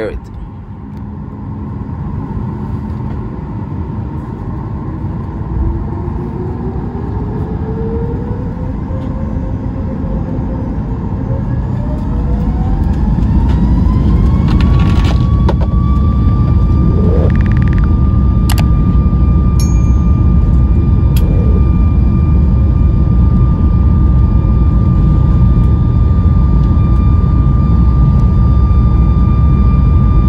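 Boeing 737 MAX 8's CFM LEAP-1B engines spooling up to takeoff thrust, heard inside the cabin beside the engine: a whine rises in pitch over about ten seconds and then holds steady, while the rumble grows louder and stays loud as the takeoff roll gets under way. A couple of faint clicks come about two-thirds of the way through.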